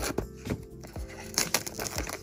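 Small scissors snipping through the clear plastic shrink wrap on a cardboard blind box, then the thin film crinkling loudly as it is torn and peeled away about a second and a half in. Soft background music plays underneath.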